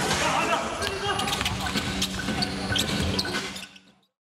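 Basketball bouncing on an indoor court amid game noise, with voices, the sound fading out near the end.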